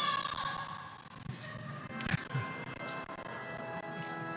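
The tail of a spoken congregational response, then instrumental music entering about two and a half seconds in with steady held chords, the start of the closing hymn. A single knock sounds about two seconds in.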